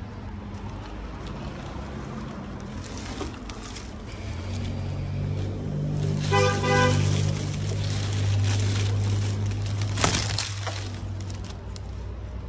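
A car horn toots once, briefly, about six seconds in, over the low rumble of a passing vehicle that builds and fades. A sharp knock comes about ten seconds in.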